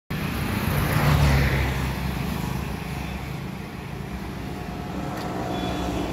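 A motor vehicle passing on the road, loudest about a second in and then fading, over steady traffic noise.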